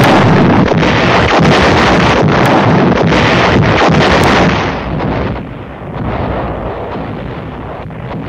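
Artillery barrage: loud gunfire and shell bursts that crash in suddenly and run on densely for about four seconds, then settle into a lower, rolling rumble.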